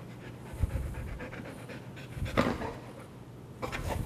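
Young golden retriever panting rapidly, with a couple of louder thumps along the way.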